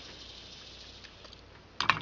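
Low room tone, then a brief pair of short wet smacking clicks near the end: a fluorocarbon line knot being wetted with the lips before it is drawn tight.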